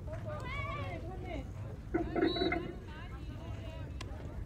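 Players and spectators shouting and cheering as a batter runs out a hit, with a louder burst of yelling about two seconds in.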